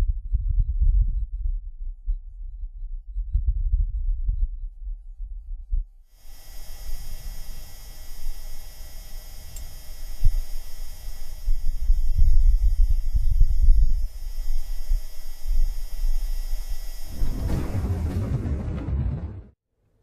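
Wind on Mars recorded by the Perseverance rover's microphone: a low rumble that rises and falls in gusts. About six seconds in, a steady hiss with a faint hum of fixed tones joins it. The sound swells near the end, then cuts off suddenly.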